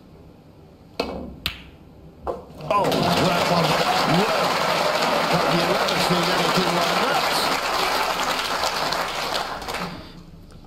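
Snooker balls clicking: a sharp click of the cue striking the cue ball about a second in, a second ball-on-ball click half a second later and a duller knock just after two seconds. Then the arena audience applauds loudly and steadily, with some cheering voices, easing slightly near the end.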